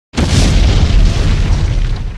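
Explosion sound effect: a sudden loud boom a moment in, then a deep, sustained rumble that starts to die down near the end.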